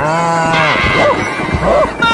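A wavering, bleat-like vocal cry lasting a little over half a second, followed by two short sliding cries.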